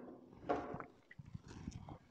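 A man's footsteps as he walks across the room, soft low knocks, with a short louder sound about half a second in.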